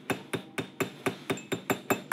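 A small hammer tapping a scope's lens barrel in a quick, even run of sharp taps, about four to five a second.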